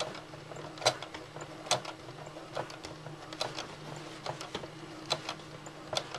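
Domestic sewing machine stitching slowly through two layers of fabric around a tight curve, with a steady low hum and a sharp click a little under once a second, with fainter ticks between.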